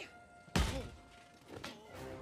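A single heavy thud about half a second in, a sound effect from the animated episode's soundtrack, dying away quickly over faint music.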